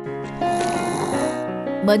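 A cartoon snoring sound effect from a sleeping man, one long breathy snore over gentle background music.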